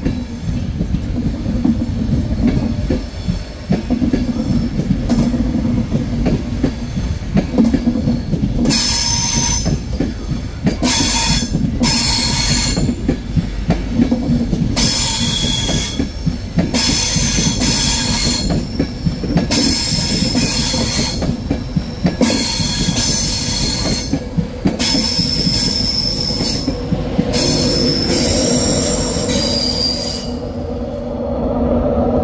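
LNER InterCity 225 train of Mark 4 coaches, propelled by Class 91 electric locomotive 91114, rolling past with a steady low rumble. From about nine seconds in, its wheels squeal high-pitched, coming and going repeatedly.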